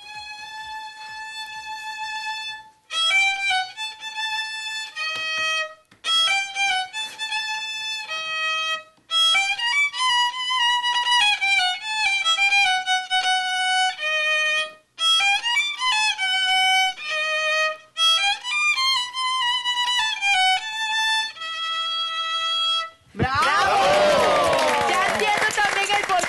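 Solo violin played live close to a handheld microphone: a melody of long bowed notes in short phrases with brief breaks between them. The playing stops about a second before the end, and applause breaks out.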